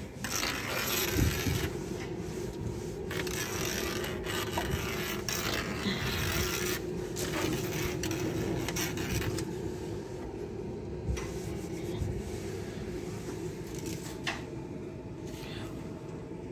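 A cloth being rubbed back and forth over a kitchen countertop, wiping it clean. The rubbing is continuous and scratchy and rises and falls with the strokes, with a steady low hum underneath.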